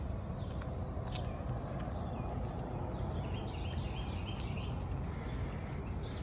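Steady low rush of wind and tyre noise from riding an electric bike along a paved path, with a few short bird chirps about halfway through.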